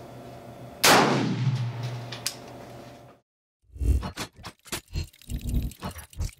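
A single rifle shot about a second in, sharp and loud, with a long ringing tail. After a brief silence comes a quick run of metallic clanks and clicks, a clockwork-gear sound effect.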